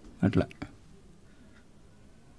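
One short spoken word, followed by a faint click and then quiet room tone.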